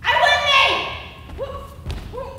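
Stage sword fight: an actor's loud, falling shout lasting about a second, a short grunt, then a single sharp knock near the end as a blow lands on a shield or a foot strikes the wooden stage.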